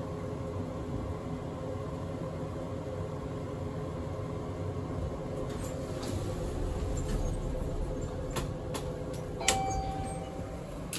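Mowrey hydraulic elevator car descending slowly, with a steady hum and rumble from the ride. Near the end come a few clicks, then a louder click and a short single-tone beep as the car arrives.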